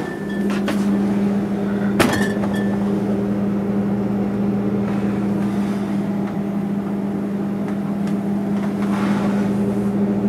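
Refrigerator running with its door open: a steady low hum, with a click as the door opens and a single knock about two seconds in.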